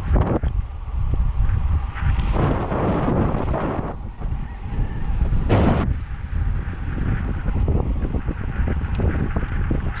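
Wind buffeting the microphone of a camera mounted on a moving road bike: a steady low rumble with road noise underneath. There is a short, louder burst of noise a little past halfway.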